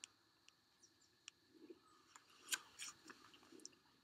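Near silence, with a few faint scattered clicks and ticks.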